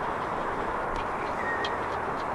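Steady outdoor background noise, with a few faint light clicks about a second in and again near the end.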